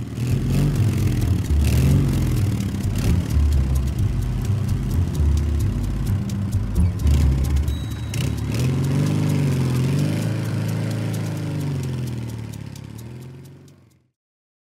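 A motor vehicle engine running and revving, its pitch rising and falling several times, with scattered clicks; it fades out near the end.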